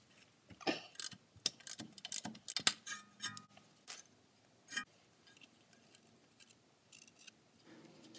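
Small hand ratchet clicking in short, irregular runs as it backs out the bolt holding a wheel speed sensor in the wheel hub, with a few faint clicks near the end.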